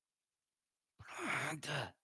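Dead silence for the first second, then a man's breathy sigh with a little voice in it, dropping in pitch and lasting just under a second.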